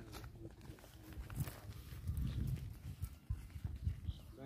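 Footsteps of several people walking on grass and dirt, with a low wind rumble on the microphone.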